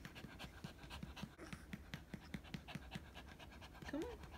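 A small long-haired dog panting, a quick, even run of faint breaths.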